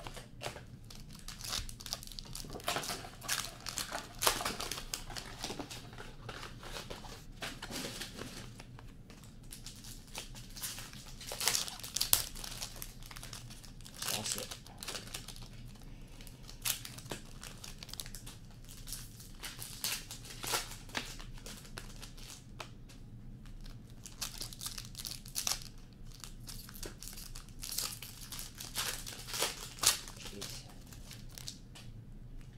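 Foil hockey card pack wrappers crinkling and tearing as packs are ripped open, with cards shuffled and handled between hands; irregular bursts of crackling throughout.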